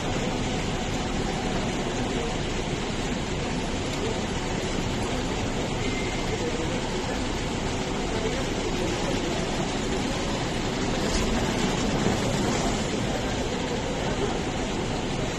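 A steady, even background din with indistinct voices mixed in.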